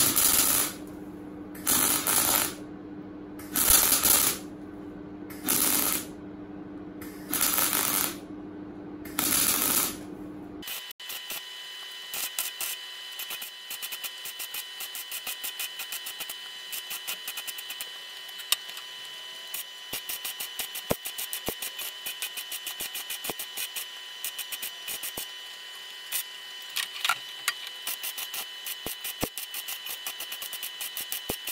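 MIG welder welding thin steel door-frame metal. It first lays six short bursts of arc crackle, each about a second long with brief pauses between. After a cut it runs on as a longer, lighter, fast crackle with a faint steady high whine underneath.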